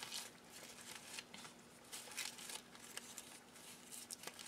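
Faint, irregular crinkling and rustling of brown kraft paper as strips of a paper bag are twisted together by hand.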